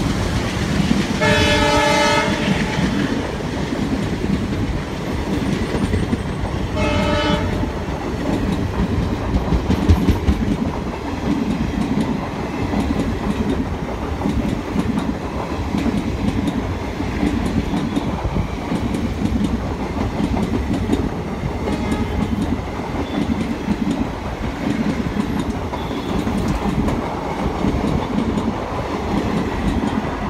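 Empty passenger coaches rolling past with a steady rhythmic clickety-clack of wheels over rail joints and a running rumble. A locomotive air horn sounds twice: a blast of over a second about a second in, and a shorter toot around seven seconds.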